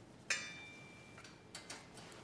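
Pop-up toaster's lever pressed down to start toasting: a sharp click with a brief metallic ring that fades over about a second, then two small clicks near the end.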